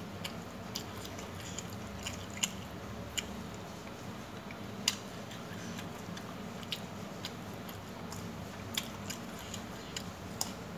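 Eating by hand from a steel plate: fingers scrape and gather rice across the metal while chewing goes on, with irregular small sharp clicks every second or two over a steady low hum.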